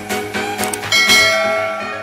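Background music with a bell ding about a second in that rings and fades away: a notification-bell sound effect.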